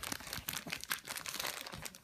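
A dog nosing and licking inside an empty foil-lined snack bag, the foil crinkling in quick, irregular crackles throughout.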